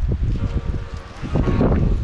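Wind buffeting the microphone in uneven gusts, with faint voices in the background.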